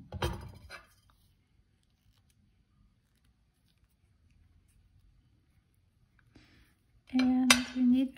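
Side cutters and copper jewelry wire giving a short metallic clicking clatter in the first second, followed by near silence with faint handling taps.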